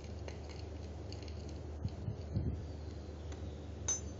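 Soft scraping and light ticks of a dry flour mix being stirred by hand in a bowl, over a steady low hum, with a sharp click near the end.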